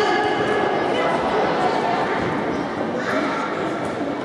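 Voices shouting and calling out across a large echoing sports hall during a futsal game, with one raised call at the start and another about three seconds in.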